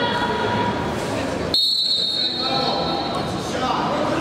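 Referee's whistle blown to start the wrestling bout: one long high blast about one and a half seconds in, over voices and crowd noise echoing in a large hall.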